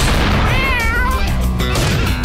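A cat yowling once with a wavering pitch, a little under a second long, starting about half a second in, over loud music.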